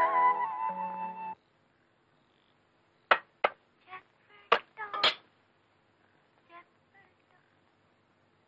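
Film background score led by flute, with held notes over a low sustained tone, cutting off abruptly about a second and a half in. After a silence come several short, sharp sounds around the middle.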